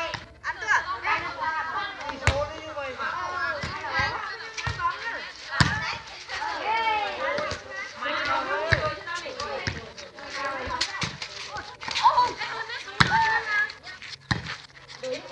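Several women's voices calling out and chattering during a volleyball rally, broken by a few sharp slaps of hands and forearms striking the volleyball.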